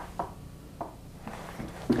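A few faint, short ticks and rustles from a masking-fluid marker being drawn across watercolor card, over quiet room hum.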